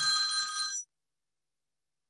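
An electronic chime made of several steady high tones sounds once for just under a second, then cuts off abruptly into silence.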